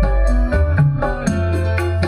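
Music played loud through a four-channel power amplifier on test, running off a small 5-ampere trial transformer: heavy held bass notes under a plucked and keyboard melody and a sharp beat. Both the lows and the mids come through.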